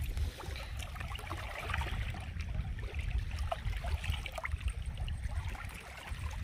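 Small ripples of shallow seawater lapping over pebbles at the water's edge, with faint scattered trickles and splashes. A steady low wind noise on the microphone runs under it.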